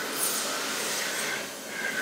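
Dyson Airblade dB hand dryer running with hands held in its slot: a steady rush of air with a faint whine.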